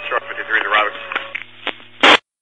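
A fire department two-way radio transmission heard through a scanner: a keyed-up channel with tinny, narrow sound, carrying indistinct voices over a steady hum, with a faint wavering tone behind them. It ends in a short burst of static right at the end as the transmission drops.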